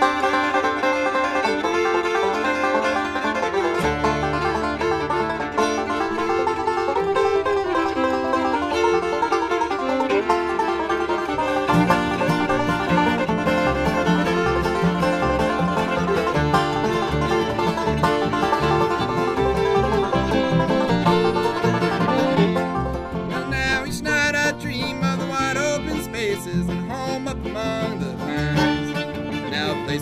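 Acoustic bluegrass string band playing an instrumental intro: fiddle, banjo and acoustic guitar over upright bass, with the low bass notes filling in about a third of the way through.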